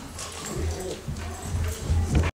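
Indistinct voices with footsteps and a few light knocks over a steady low rumble.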